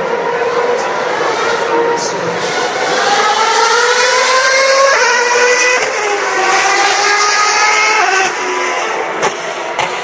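2011 Formula One car's 2.4-litre V8 accelerating past, its high-pitched engine note climbing through the gears. There is a sharp upshift about halfway through and another near the end.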